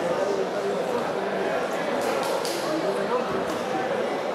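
Crowd of spectators talking and calling out over one another, with a few sharp smacks about halfway through.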